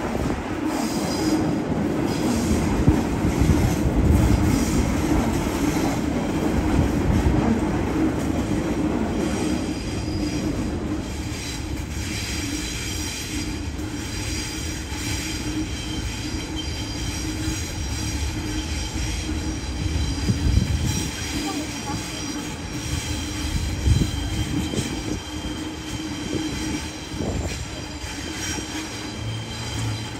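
Sydney Trains double-deck electric trains running on the tracks below. A steady rumble with a low hum fills the first ten seconds or so. From about twelve seconds in, the steel wheels squeal high-pitched against the rails for most of the rest.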